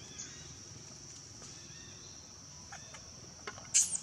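Insects trilling steadily at a high pitch, with a few faint short chirps. Just before the end comes a brief, loud, shrill cry that falls in pitch.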